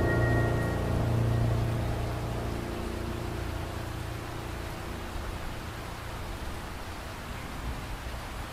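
A held music chord dies away over the first few seconds, leaving a steady hiss of water.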